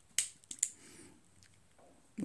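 Sharp metallic clicks from a Ruger Blackhawk .357 Magnum single-action revolver being handled in the hands: one loud click just after the start, then two quick clicks about half a second in, and fainter ones after.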